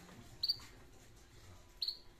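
A small bird chirping twice: two short, high chirps about a second and a half apart, over faint background hum.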